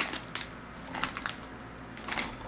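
Plastic potato-chip bag crinkling in a few short, scattered rustles as it is handled.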